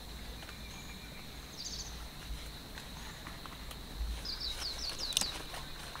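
Rural outdoor ambience: small birds chirping, with a quick run of chirps about four seconds in, over a steady high-pitched whine and a few light clicks.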